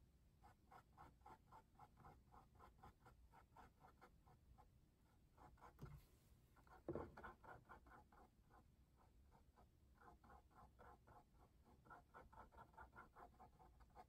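Faint sound of a small paintbrush stroking paint onto a canvas in quick short strokes, about five a second, in runs with brief pauses. There is one slightly louder knock about seven seconds in.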